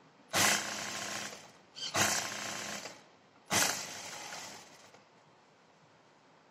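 Juki industrial sewing machine stitching in three short runs about a second and a half apart, each starting abruptly and running for about a second; the last one trails off.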